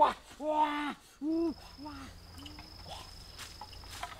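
A chicken clucking and cackling: one long drawn-out call, then a few shorter calls that fade away. From about a second in, a steady high-pitched insect call joins.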